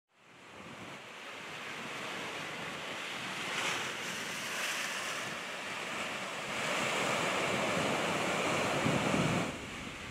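Ocean surf washing over a rocky shore, a steady rush of breaking waves that fades in over the first two seconds and drops away just before the end.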